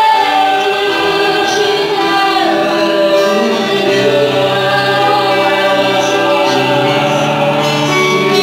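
Live worship song: several male and female voices singing together through microphones and a PA in long held notes, over band accompaniment.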